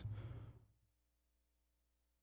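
Near silence: a soft breath trailing off right after speech, fading within about half a second, then only a faint steady hum.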